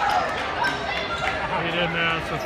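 Basketball bouncing on a hardwood gym floor, a few sharp knocks, under the steady chatter of spectators.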